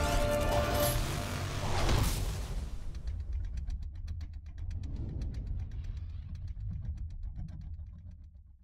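Trailer music ending in a loud whoosh and hit about two seconds in. It is followed by a motorcycle engine rumbling low with a rapid, even pulse, which fades out at the end.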